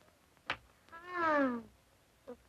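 A single sharp click, then a girl's drawn-out "ooh" that falls in pitch.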